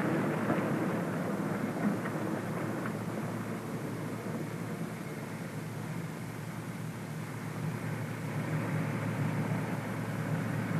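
Loaded logging truck's engine running as it pulls away, its rumble growing quieter over the first few seconds and picking up a little near the end, over a steady low hum.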